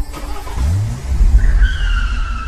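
Car sound effect: an engine revving up, its pitch rising steeply, then a long high tire screech that holds and slowly falls in pitch, over a low rumble.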